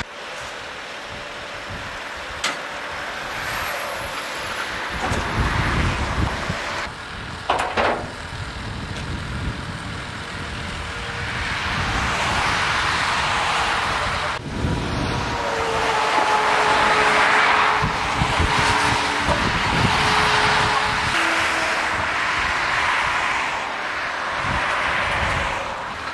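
Road traffic: cars passing one after another, swelling and fading, with a few short knocks and a steady mechanical whine for several seconds past the middle.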